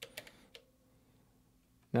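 A few soft clicks of buttons pressed on an Elektron Octatrack MKII in the first half-second, then near silence with a faint steady low tone.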